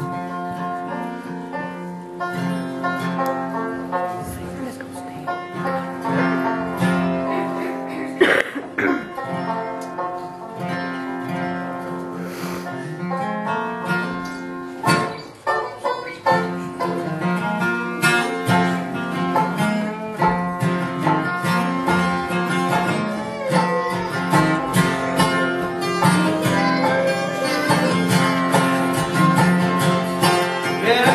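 Bluegrass band playing an instrumental passage: banjo picking over strummed acoustic guitar, continuous throughout.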